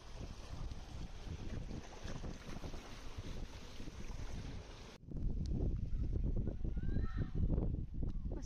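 Seawater surging and sloshing through a narrow rock channel as a noisy steady wash. About five seconds in it cuts off suddenly, and wind buffets the microphone with a low rumble.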